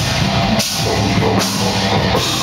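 Heavy metal band playing live: distorted electric guitars, bass guitar and drum kit, loud and dense.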